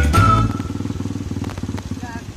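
Background music cuts off about half a second in, leaving a small motorcycle engine running with a rapid, even pulse.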